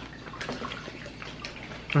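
Soft eating sounds: chewing and a few small clicks over a steady low background noise.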